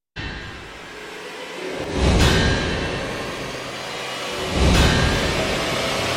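Dark film-trailer score starting out of silence, with two deep booming hits layered with whooshes, about two seconds in and again near five seconds, over a sustained bed of music.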